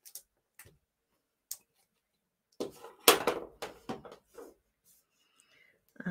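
Card stock and craft supplies handled on a wooden tabletop while dimensional foam pads are applied to a paper cross. A few light taps come early, then a cluster of rustling and small knocks about halfway through.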